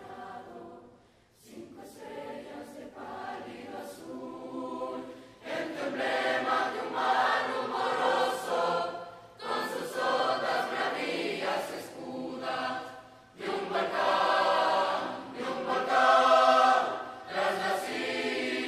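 Large mixed choir singing: it starts softly and swells much louder about five seconds in, with short breaks between phrases.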